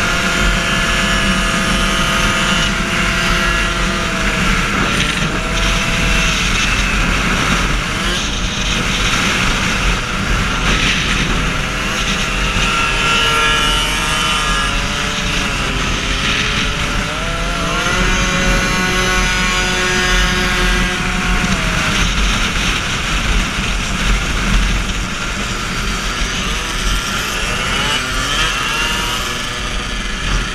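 Moped engines running at cruising speed, their pitch holding steady for a few seconds at a time, then dipping and climbing again several times as the throttle eases and opens, with wind rushing over the microphone.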